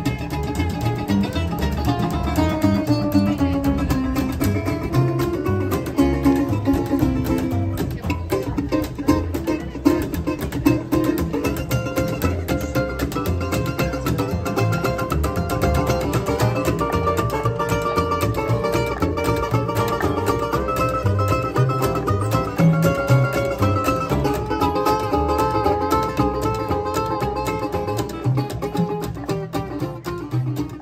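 Acoustic string band playing an instrumental passage: two resonator guitars picked and strummed over a plucked upright double bass.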